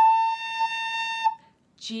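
Descant recorder playing a single held A, one steady note of about a second and a quarter that then stops.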